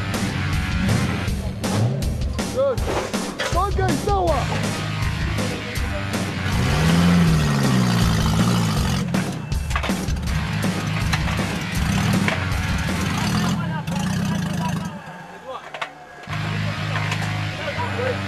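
Off-road competition cars' engines revving in rising and falling surges, with people shouting, over background music. The sound drops away briefly near the end.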